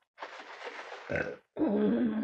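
A woman clearing her throat after a drink: a rough, breathy rasp lasting about a second, then a short voiced sound held on one pitch.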